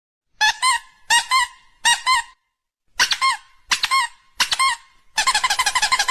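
Squeaky-toy style squeaks, each bending up and down in pitch, coming in quick pairs a little under a second apart, then running together into a fast string of squeaks about five seconds in.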